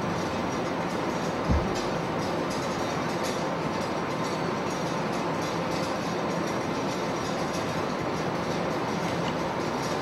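Steady, even background hiss with no clear pattern, and a single soft knock about one and a half seconds in.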